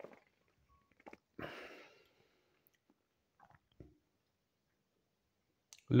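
Quiet mouth sounds of a man tasting beer: a sip and swallow, a breathy exhale about a second and a half in, and a few small clicks of the lips and tongue.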